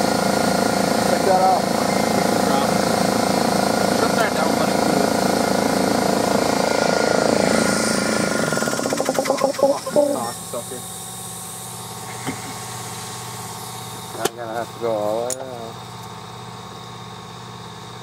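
Air compressor running with a steady mechanical drone, which cuts off about nine seconds in, leaving a lower steady hum.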